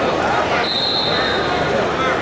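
A referee's whistle, one steady high blast of about a second starting just over half a second in, over crowd chatter in a gym.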